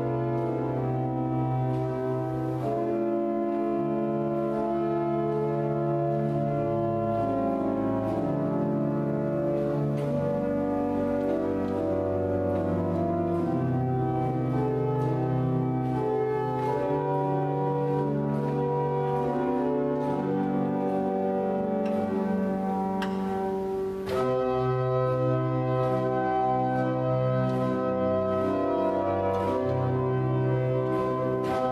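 Cavaillé-Coll pipe organ playing a slow piece in sustained chords over held bass notes. It pauses briefly about 24 seconds in, and the next chord comes in a little louder.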